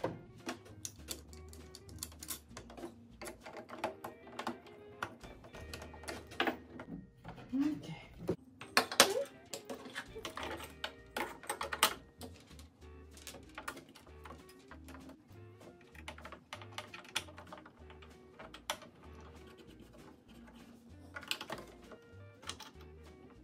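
Plastic clicks, taps and knocks of a Singer sewing machine's cover and parts being handled and fitted back together, the loudest cluster about nine seconds in, over soft background music.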